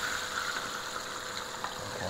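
Catfish fillets frying in hot oil in a Fry Daddy deep fryer: a steady sizzle, with a faint click near the end.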